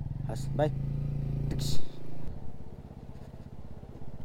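Motorcycle engine running at low revs, louder in the first two seconds and then softer, with a short sharp noise a little before the middle.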